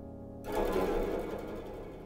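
A fading piano chord, then about half a second in a shamisen enters with a burst of rapid plucked strokes that dies away within about a second.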